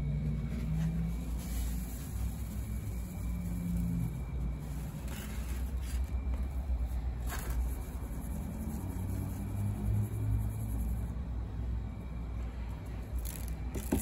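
Faint scraping and rattling of corned black powder grains being shaken in a fine stainless mesh strainer to sift out the dust, over a low steady rumble.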